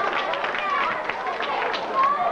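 Children's feet stepping and stamping on a stage as they dance, many quick irregular taps, over children's voices chattering.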